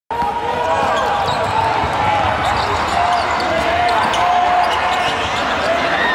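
Live basketball game sound: many overlapping voices from the crowd and court, with the ball bouncing on the hardwood. It starts abruptly and holds steady.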